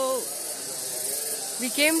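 A woman talking, with a pause in the middle, over a steady high hiss.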